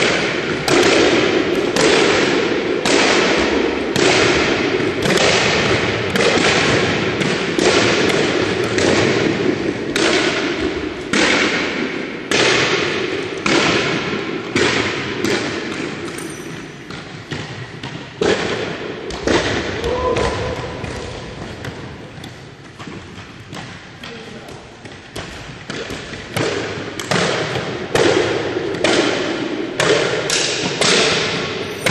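Spring jumping stilts (powerbocking stilts) landing again and again on a sports-hall floor, about one heavy thump every three-quarters of a second, each echoing in the hall. The landings thin out and soften for several seconds midway, then pick up again near the end.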